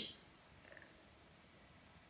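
Near silence: faint room tone, with the hissing end of a spoken word at the very start.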